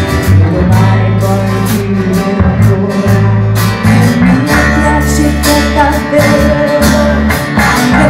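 A live band playing a pop ballad: guitars, low bass notes and drums, with a woman singing over them through a microphone.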